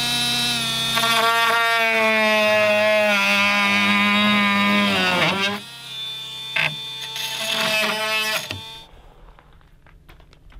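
Ridgid cordless oscillating multi-tool running with a steady high hum as it cuts engineered-wood lap siding. It winds down about five seconds in, then runs again briefly before stopping near the end.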